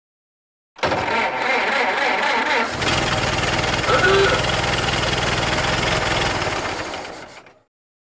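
An engine starting: a noisy hiss cuts in about a second in, then a little before three seconds a low, steady rumble sets in as the engine runs. It fades out just before the end.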